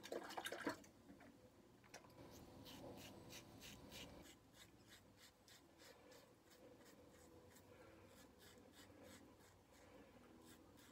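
Stainless-steel safety razor scraping through stubble on a lathered cheek in short, quiet strokes, about three a second. It opens with a brief splash of water as the razor is rinsed.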